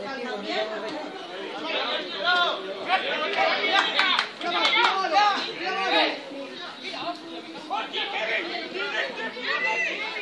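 Many overlapping voices shouting and chattering: young footballers calling to each other on the pitch, mixed with spectators' talk in the stand.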